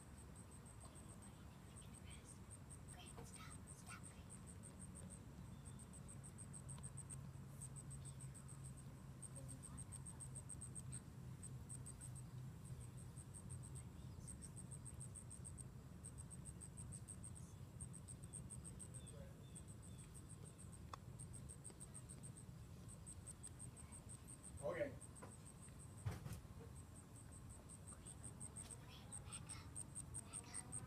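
Faint, high-pitched insect chirping, repeating in short trains of rapid pulses, over a low steady rumble. A brief falling call and a sharp click stand out a few seconds before the end.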